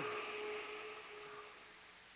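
Electric lift running as a radio-play sound effect: a steady hum that fades away over about a second and a half, leaving a soft hiss.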